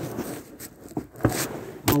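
Scraping and rubbing against rock, with several sharp knocks, as a person squeezes his shoulders through a narrow gap between boulders.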